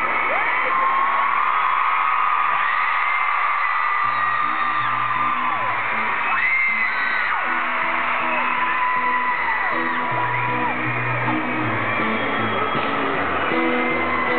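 Live band music heard from the audience in a large arena, with fans screaming and whooping over it; a pulsing bass line comes in about four seconds in.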